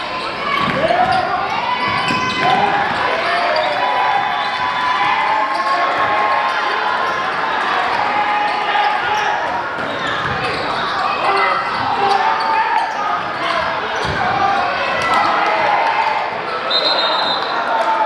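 Basketball being dribbled on a hardwood gym floor, with players' and spectators' voices echoing in the gym. Near the end a referee's whistle blows once, briefly, as a foul is called.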